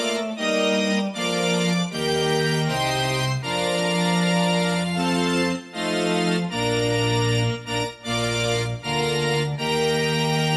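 Instrumental intro of a gospel song: organ-voiced keyboard playing held chords that change about every second, with short breaks between some of them.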